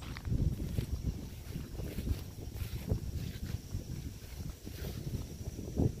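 Wind noise on a phone microphone: an uneven low rumble with soft, irregular thumps from walking and handling.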